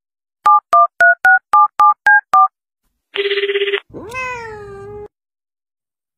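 Eight telephone keypad touch-tones in quick succession, about four a second, followed by a short loud buzz and then a quieter cat meow that rises and falls.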